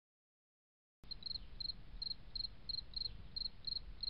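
A cricket chirping steadily, about three short chirps a second, starting about a second in after silence.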